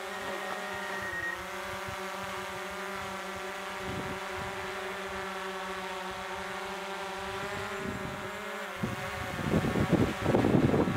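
Small quadcopter drone's four propellers running steadily as it hovers just after takeoff, a steady multi-tone whine with a slight dip in pitch about a second in. Near the end a louder rushing noise takes over.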